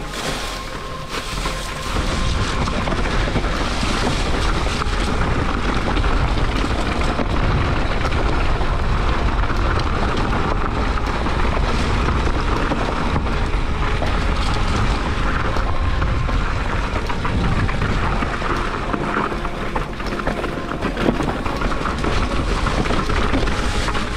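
Mountain bike riding fast down a rough, leaf-covered rocky trail: continuous tyre and suspension noise with frequent knocks and rattles from the bike over rocks, under heavy wind buffeting on the action camera's microphone. It gets louder about two seconds in as speed picks up.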